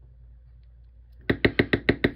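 Faint room hum, then about a second and a half in a fast run of sharp clicks, about seven a second, from tweezers and fingers working a tiny carbon brush and its spring out of a small model-locomotive motor's plastic end cap.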